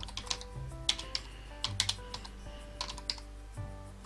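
Computer keyboard typing: an irregular run of key clicks as a few words are typed, over soft background music.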